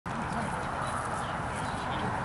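Steady open-air background noise, a low rumble with faint distant voices.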